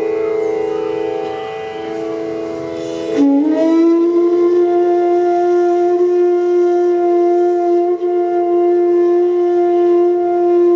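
Bansuri (bamboo flute) playing the slow alap of raag Parmeshwari over a steady drone; about three seconds in it slides up into a louder long-held note.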